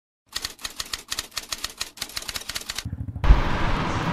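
A quick, even run of typewriter-like clicks, about seven a second, that stops just under three seconds in. A brief low hum follows, then a sudden switch to a louder, steady rumbling noise near the end.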